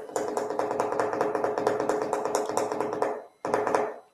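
A burst of music: a steady pitched note under rapid, even beats. It breaks off a little after three seconds in, comes back briefly, and stops just before the end.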